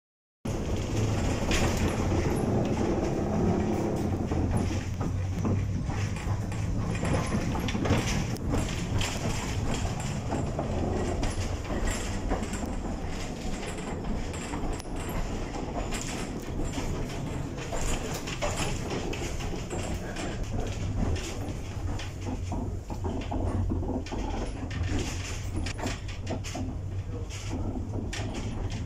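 Tram in motion heard from inside the passenger car: a steady low rumble with continual rattling and clattering from the car and its wheels on the rails.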